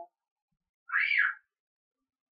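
A cat's single short meow about a second in, rising then falling in pitch.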